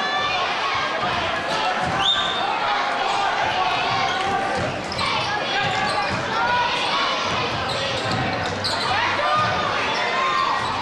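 A basketball being dribbled on the hardwood floor of a large, echoing gym, under the steady chatter and shouts of a crowd and players.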